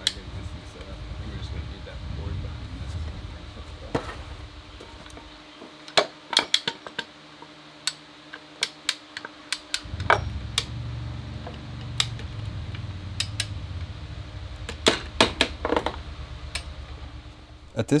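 Steel plank clamps and tools clinking and clanking as a thick oak plank is clamped and levered onto a wooden boat's frames: scattered sharp metallic clicks and knocks, thickest in the second half. A low steady hum underneath stops for a few seconds about a third of the way in.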